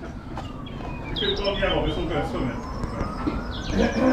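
A black vintage car pulling into the yard, its gearbox whining with a pitch that falls and then rises again. Birds chirp in the background.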